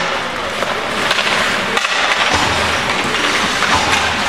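Ice hockey in play: skate blades scraping and carving on the ice and sticks clacking on the puck and on each other, a steady scraping noise broken by many short knocks.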